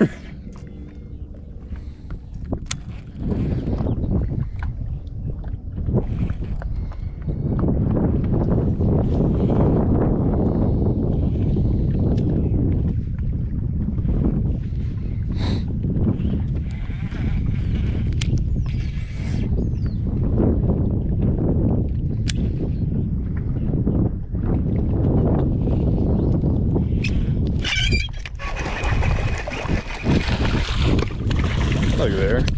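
Wind buffeting the microphone in uneven gusts, with a few sharp clicks and a louder burst of noise near the end.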